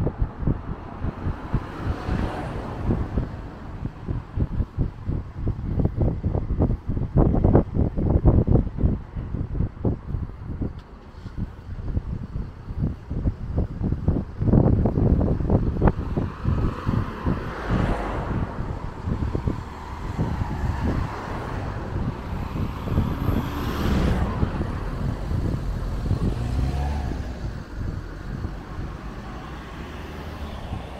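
Road traffic on a bridge: cars passing close by, two of them swelling loudest in the second half, with gusty wind buffeting the microphone, strongest in the first half.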